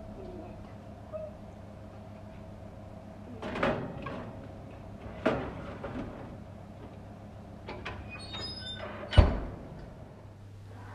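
Metal baking trays slid onto an oven's wire racks, with a couple of sharp clanks, then the oven door shut with a loud thump near the end, over a steady low hum.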